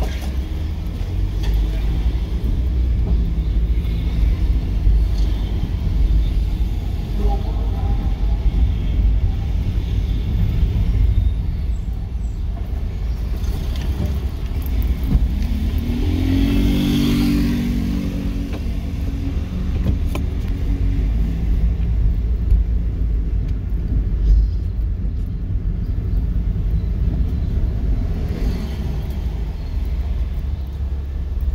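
Car driving slowly, heard from inside the cabin as a steady low rumble of engine and road. About halfway through, an engine note rises and holds for several seconds before fading back into the rumble.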